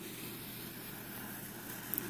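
Faint steady hiss of background room noise with no distinct sound events.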